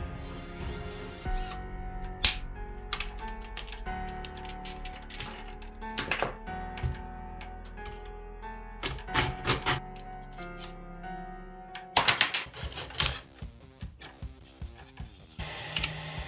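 Background music over a series of sharp clicks and knocks from plastic and carbon-tube model parts being handled and fitted, with a quick cluster of them about twelve seconds in.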